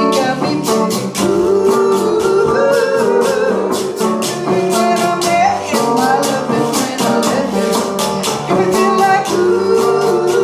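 A small acoustic band playing a Latin-style song live: a woman singing over a strummed acoustic guitar, with a hand shaker and other small hand percussion keeping a steady beat.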